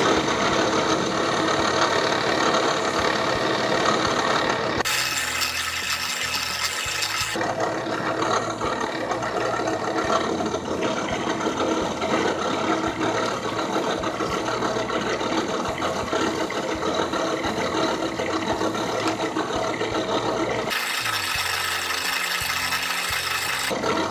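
Drill press running, spinning a bolt head against 1000-grit sandpaper to sand it smooth: a steady motor hum mixed with the rasp of abrasive on metal. Twice, about five seconds in and again near the end, it turns hissier and higher for a couple of seconds.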